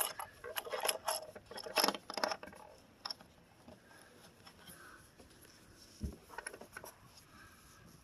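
Roof-rack crossbar clamp's tightening knob turned by hand against its rail fitting, giving a run of small clicks and rattles in the first couple of seconds and another brief cluster about six seconds in.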